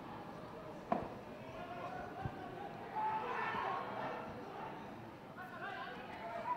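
Faint voices of players calling out across an open football ground, with a single sharp knock about a second in.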